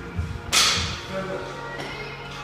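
A loaded barbell with rubber bumper plates is dropped onto the gym floor about half a second in: one sharp bang that rings briefly in the hall. Background music with a low thumping beat plays under it for the first second.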